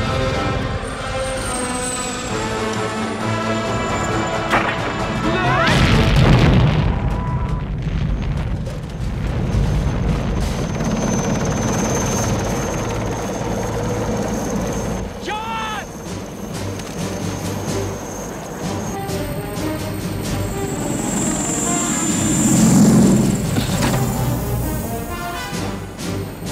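Film soundtrack mix: orchestral action score over helicopter rotor and engine noise, with booms. The mix swells loudest about six seconds in and again near the end.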